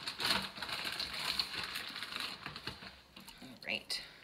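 Raw chicken thighs being handled and laid by hand into an electric pressure cooker's inner pot: irregular wet handling noises and light clicks, busiest in the first half.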